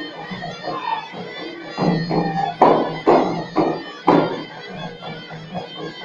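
Hand-held frame drums of a Moroccan folk troupe struck in a loose run of about five beats in the middle of the stretch, over a steady low tone.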